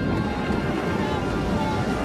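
Steady rumbling storm noise of wind and rough water in a dramatised film scene, with faint shouting voices in the background.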